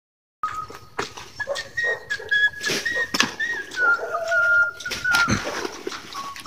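Small hand hoe chopping and scraping into damp soil and leaf litter, a series of short knocks and scrapes, over a thin, wavering high whistle-like tone that stops about five seconds in.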